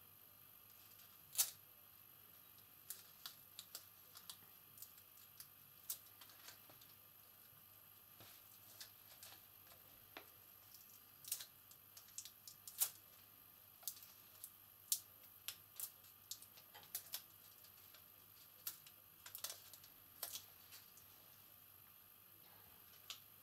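Faint, irregular small clicks and ticks of fingers handling a satin ribbon end wrapped in a scrap of tape, over quiet room tone with a low hum.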